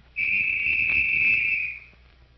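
A whistle blown in one long, steady blast of about a second and a half, given as the start signal to the stunt driver.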